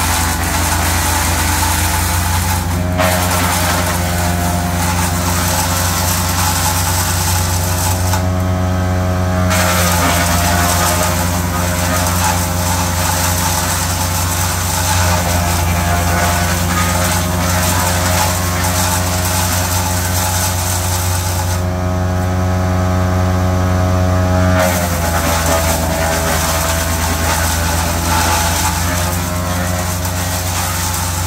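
GL&D SUPER tracked bio chipper running under load, chipping ash: a dense crunching, shredding noise over the engine's steady hum. The chipping noise drops away twice for a second or two, about eight seconds in and again about twenty-two seconds in, and the engine note shifts each time the load changes.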